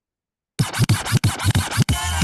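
Vinyl scratching on a DJ turntable: quick back-and-forth strokes of the record, about seven a second, starting about half a second in after a moment of silence.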